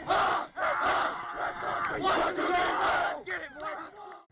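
A team of football players in a huddle shouting together, many voices at once. The shouting thins out to a few separate voices in the last second.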